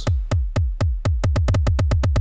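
Sequenced electronic drum hits from the JR Hexatone Pro iPhone app, each with a low thump that drops in pitch. They play eighth notes at 122 bpm, about four a second, then switch to sixteenth notes, about eight a second, a little over a second in, as the oscillator's timing value is changed.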